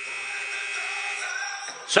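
Arena game horn sounding as the clock runs out at the end of the game: one long, steady blast that stops near the end.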